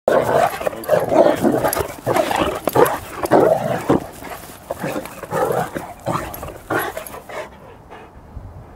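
Two dogs, a young Cane Corso and a Rhodesian Ridgeback, play-fighting: growls and snarls in quick, rough bursts, thinning out in the second half.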